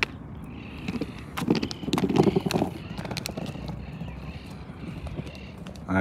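Skateboard wheels rolling over interlocking concrete paving blocks, clacking irregularly as they cross the joints between the blocks.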